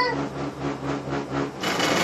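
Cable car gondola running past a support tower: a rhythmic mechanical rumble, pulsing a few times a second, over a steady low hum.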